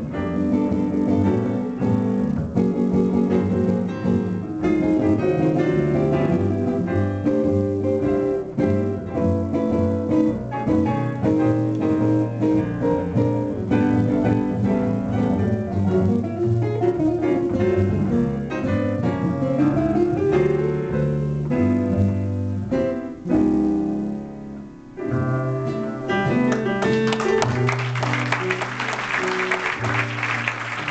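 Live jazz trio of double bass, piano and guitar playing a tune to its close; in the last few seconds audience applause rises over the final held notes.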